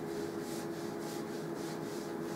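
A chalkboard being wiped with a hand-held eraser pad: quick back-and-forth scrubbing strokes, about three a second.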